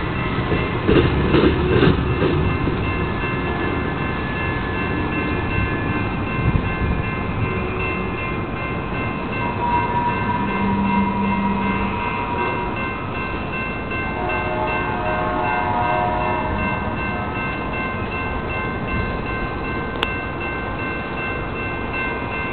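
A freight train's cars rolling slowly through a rail yard. There is a clattering rumble that is choppier for the first couple of seconds, then a steady roll with thin, steady high whines over it.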